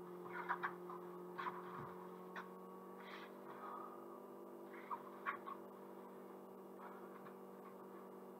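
Faint steady electrical hum, with a few soft, short sounds in the first half from a man exercising on a floor mat while he holds a side plank with a dumbbell.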